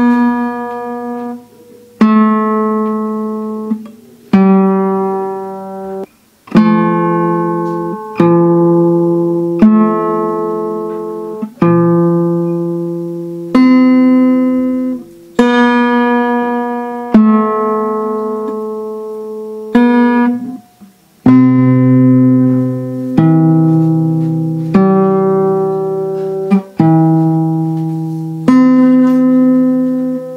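Acoustic guitar in standard tuning played fingerstyle: single plucked notes and broken chords moving through A minor, F and C. The notes are slow and well spaced, each left to ring, with a few brief stops between phrases.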